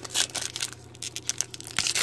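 Foil wrapper of a 2018 Donruss Optic football card pack being torn open by hand, crinkling as it goes. The loudest rip comes about a quarter second in and another near the end.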